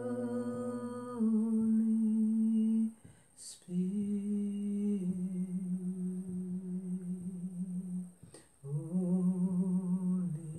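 A voice humming a slow, low tune in long held notes, each lasting one to four seconds, with short breaks between phrases.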